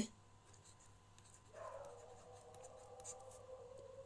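Faint scratching and tapping of a stylus on a pen tablet as words are handwritten. A faint steady tone comes in after about a second and a half.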